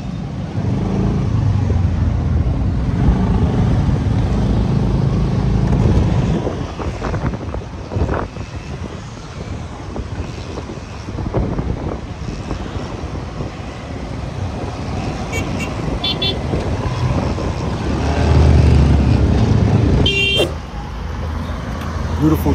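Motorcycle riding through city traffic: engine running and swelling as it speeds up and eases off, over a steady road noise. A few short vehicle horn toots sound near the end.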